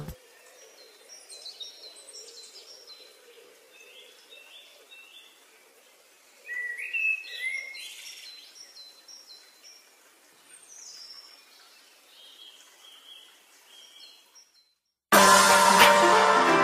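Faint birds chirping, a loose series of short high calls and little sliding notes. Loud music comes in abruptly near the end.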